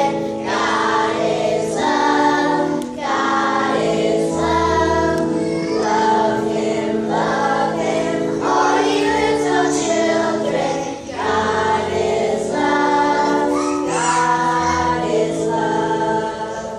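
Children's choir singing a hymn in unison, phrase by phrase, over held accompaniment chords.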